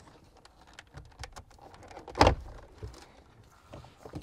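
Plastic dash trim clips clicking as the three-knob climate-control panel of a 2014–2019 Toyota 4Runner is pulled out of the dash, with one loud snap a little over two seconds in as it comes free.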